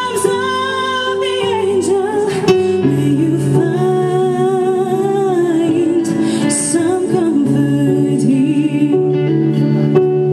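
A woman singing a ballad live with her band, holding long notes with vibrato over guitar and band accompaniment.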